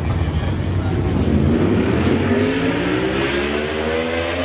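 A car engine running low and steady, then accelerating about a second in, its pitch rising steadily for about three seconds.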